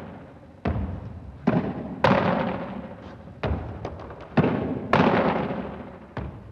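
Squash ball repeatedly struck by a racket and hitting the front wall and floor in solo drill. About six sharp smacks, each ringing on in the court's echo.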